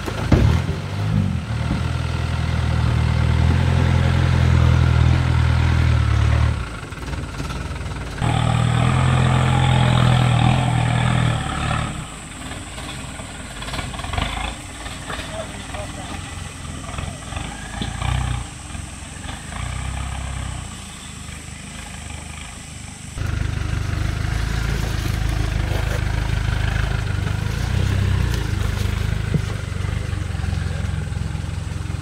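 Land Rover 110 County's V8 engine working at low revs as the truck crawls over rock, its note rising and falling with the throttle. The engine drops away to a quieter stretch in the middle, where fainter scattered sounds take over, and comes back loud for the last several seconds.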